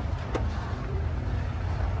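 2011 Scion tC's 2.4-litre four-cylinder engine idling: a low, steady rumble, with a single short click about a third of a second in.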